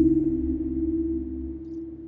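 Dramatic background score: a sustained synthesizer drone of low held tones, with a thin high tone fading out partway through.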